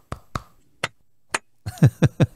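Hand claps made as sync markers, sharp spikes for lining up two separately recorded audio tracks in editing: a few single claps spaced about half a second apart, then near the end a louder quick run of claps.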